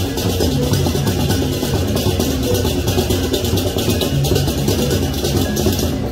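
Balinese gamelan music playing for a ceremonial dance: sustained low tones under a fast, steady pulse of bright struck strokes.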